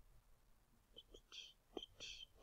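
Near silence: room tone, with a faint whisper-like voice sound starting about a second in.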